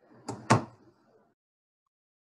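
Two sharp thumps in quick succession, the second much louder, picked up through a participant's open microphone on a conference call.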